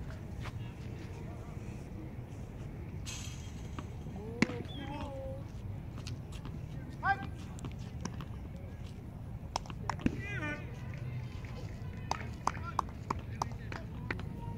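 Distant voices of players and spectators calling out at a baseball field over a steady low background rumble, with a few sharp knocks; the loudest knock comes about four seconds in, and a quick run of them comes near the end.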